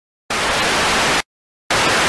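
Two bursts of hissing static, a glitch sound effect: the first lasts about a second and cuts off sharply, and after a short silence the second starts near the end.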